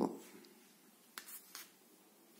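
A few faint, brief rustles and scratches, a little over a second in, from hands handling wool yarn and a plastic crochet hook while forming a magic ring.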